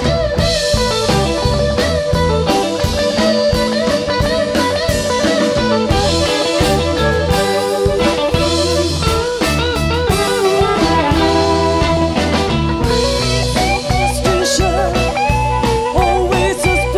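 Live band playing an instrumental passage: a guitar line with bent, wavering notes over bass and a drum kit.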